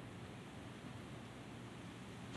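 Faint, steady background hiss with no distinct sound.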